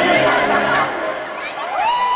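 A group of children's voices singing together in chorus. The group singing thins out about a second in, leaving a few high voices sliding in pitch.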